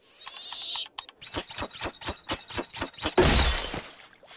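Cartoon sound effects: a high falling zap in the first second, then a quick run of sharp clicks at about six a second, then a loud crash like something shattering about three seconds in.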